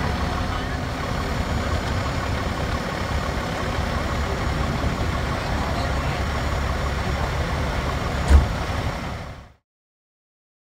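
Seagrave fire engine's diesel engine idling steadily amid city street noise, with a single loud thump near the end before the sound cuts off.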